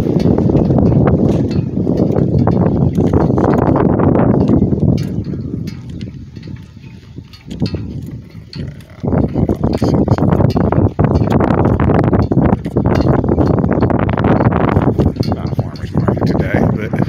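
Wind buffeting a phone microphone in loud, uneven gusts that ease off for a few seconds in the middle, with footsteps on pavement underneath.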